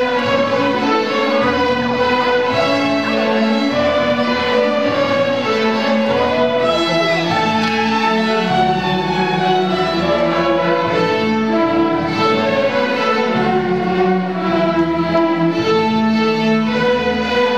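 Student string orchestra playing, violins bowing together with the rest of the string section in continuous, sustained notes.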